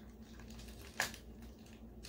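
Quiet room tone with one sharp click about a second in, from makeup tools being handled as a brush is picked out.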